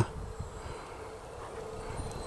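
Faint, steady drone of a distant electric RC airplane's motor and propeller, under a low rumble of wind on the microphone.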